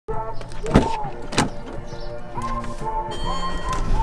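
Two sharp clicks about two-thirds of a second apart from a car door being opened, its handle and latch, over background music.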